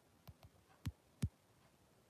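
Four dull thumps in quick succession, the last one just past a second in the loudest, from the recording phone being handled and tapped.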